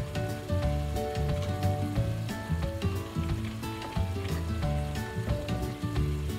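String beans simmering and sizzling in sauce in a wok, under background music with a steady beat.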